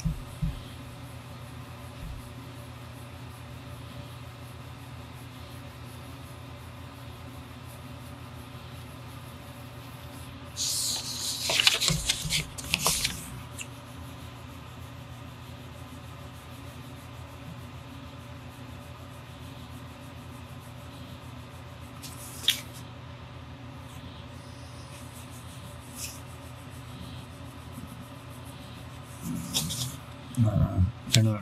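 Steady low background hum, like a fan or air conditioner. A brief scratchy rustle comes about eleven seconds in, and a single click around twenty-two seconds.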